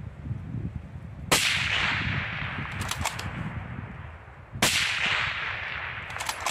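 Two rifle shots from a Tikka T3 Varmint in .260 Remington, about three seconds apart, each with a long rolling echo. A few short sharp clicks follow each shot.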